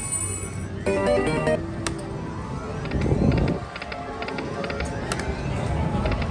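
Dragon Link 'Happy Lantern' video slot machine playing its game music and chiming note runs as the reels spin, with a few sharp clicks and a short noisy burst about halfway through.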